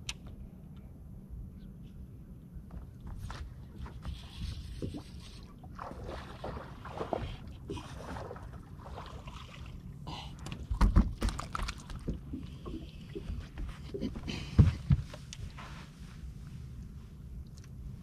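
Knocks, thumps and rustling of a fish being fought and landed from the deck of a bass boat, over a low steady rumble. The loudest thumps come about eleven seconds in and again near fifteen seconds.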